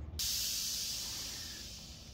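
A hiss that starts suddenly and fades away over about two seconds.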